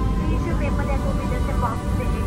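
Jet airliner cabin noise as the plane rolls along the runway: a steady, loud low rumble of engines and wheels, with a voice heard over it from about halfway in.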